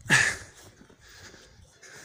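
A hiker breathing hard while climbing: a loud exhale at the start, then quieter breaths about once a second.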